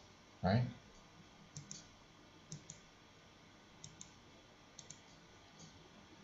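Faint, sparse clicks at a computer: about seven light clicks over a few seconds, some in quick pairs, after a single spoken word near the start.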